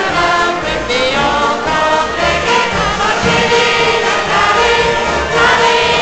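Live music from an ensemble of musicians that includes violins, playing continuously.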